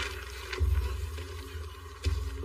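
Low, steady droning film score, with a single thump about a quarter of the way in.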